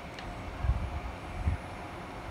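Steady low background rumble with two dull low bumps, a bit under a second in and at about a second and a half.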